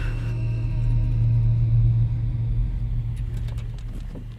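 A Ford Crown Victoria's V8 engine giving a low, steady rumble as the car slides through a turn in loose dust; it swells in the middle and fades towards the end, with music underneath.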